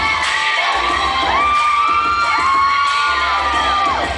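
A group of children cheering and screaming, with several long, high-pitched held screams overlapping from about a second in, over loud music with a steady beat.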